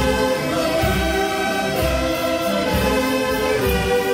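A large saxophone orchestra playing a birthday tune, held chords over a steady low beat.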